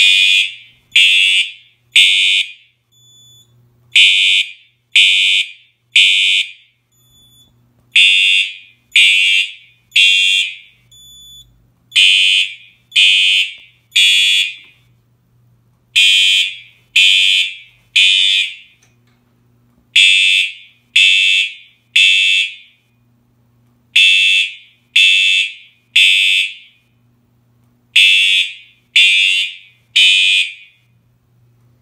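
Fire alarm horn sounding an evacuation signal in the temporal-three pattern: three half-second blasts, a pause of about a second and a half, repeating. The signal is set off by a drill from the fire alarm control panel.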